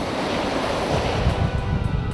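A lorry passing close by at speed: a rush of tyre and air noise that swells and then fades. Music comes in near the end.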